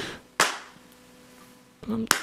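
A single sharp smack about half a second in, then a quiet room with a faint steady hum.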